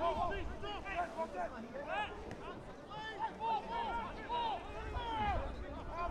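Distant shouted voices across a rugby field: a string of short calls and cries rising and falling in pitch, over a low steady rumble of outdoor ambience.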